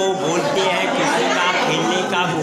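Speech: a man talking, with the chatter of other voices around him.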